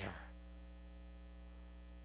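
Faint, steady electrical mains hum in the microphone and sound system. A man's last word dies away in the room's reverberation just at the start.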